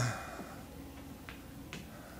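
Faint footsteps of a man walking across a carpeted platform, heard as two light clicks about half a second apart over quiet room tone.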